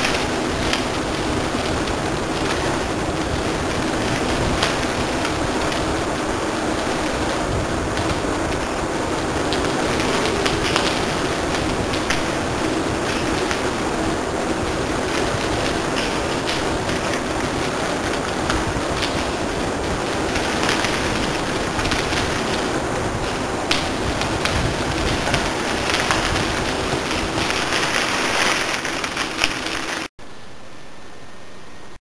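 Steady rushing noise of a bicycle rolling on a crushed-stone rail trail, with air rushing over the microphone as it rides, and a few short clicks and ticks from the bike.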